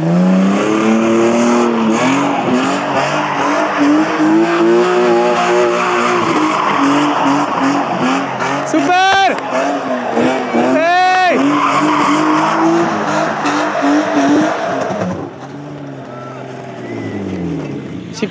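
BMW E36 sedan drifting: the engine is held at high revs while the rear tyres slide and skid on the asphalt, with two short high squeals that rise and fall about nine and eleven seconds in. Near the end the engine comes off the throttle and its pitch falls as the car slows.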